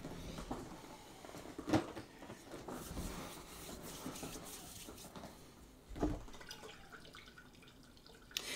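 Liquid dish soap being poured into a glass container of hydrogen peroxide, a faint liquid sound with a soft click about two seconds in and a low knock later on.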